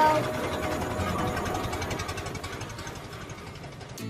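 Cartoon sound effect of a small forklift engine running as the forklift drives forward, a fast even rattle that fades gradually toward the end.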